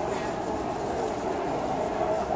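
Steady din of a busy indoor hall, with indistinct crowd chatter blurred into one even murmur.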